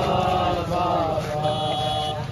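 Male voices chanting a noha, a Shia mourning lament, in long drawn-out sung lines over a low steady rumble of the street crowd.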